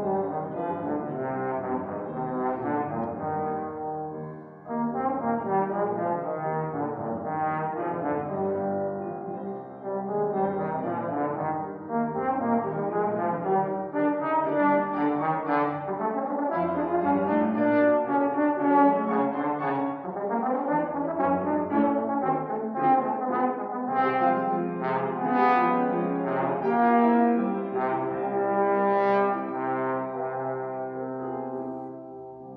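Tenor trombone playing a melodic solo line with grand piano accompaniment, with short breaks in the line around four and ten seconds and a few gliding slides in pitch near the two-thirds mark.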